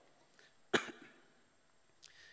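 A single short cough from a man at a lectern microphone, about three quarters of a second in, with quiet room tone around it.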